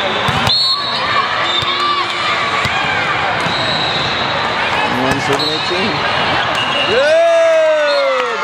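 Echoing din of a large hall full of volleyball games: ball hits and bounces, short squeaks and overlapping voices. Near the end a long, loud shout goes up as the rally is won.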